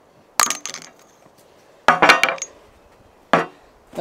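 Metal clanks as steel hydraulic-cylinder parts and a screwdriver are handled and set down on a steel work table during seal removal. There are three separate clatters, the middle one ringing briefly.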